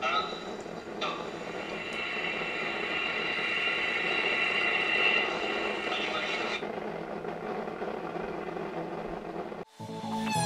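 Ariane 5 rocket lifting off, its main engine and two solid boosters burning, heard from the launch webcast through a screen's speakers; the noise swells over the first few seconds and then eases. It cuts off suddenly near the end as music starts.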